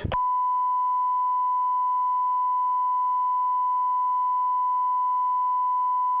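Broadcast line-up test tone: a single steady beep at one pitch, held without change.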